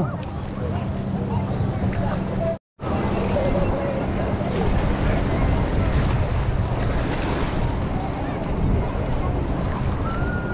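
Shallow sea water washing at the shoreline, with wind buffeting the microphone. A steady low hum runs under the first few seconds, and the sound drops out for a moment just under three seconds in.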